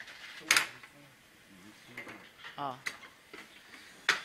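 Metal clinks of pliers working on a 3D printer's X-axis rod and carriage: one sharp click about half a second in, then a few lighter taps.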